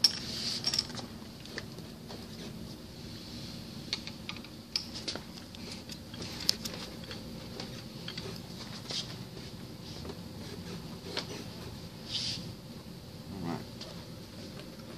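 Scattered light metallic clicks and taps from hand work on a centrifugal pump's seal housing, as parts and bolts are handled and fitted.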